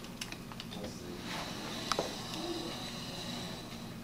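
Knife blade lightly scoring a linoleum sheet along a steel carpenter's square: faint scratchy scraping with scattered small ticks, one sharper tick about two seconds in.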